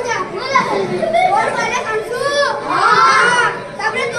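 Boys' voices speaking loudly in animated, high-pitched stage dialogue, picked up over a microphone.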